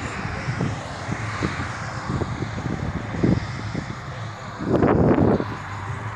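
Steady rumble of a passing vehicle, with a low hum and a louder swell near the end.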